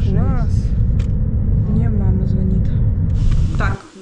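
Car engine and road noise heard from inside the cabin while driving: a steady low rumble that cuts off suddenly near the end.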